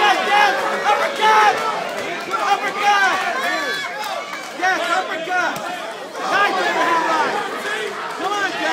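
Crowd of spectators talking and calling out, many voices overlapping throughout.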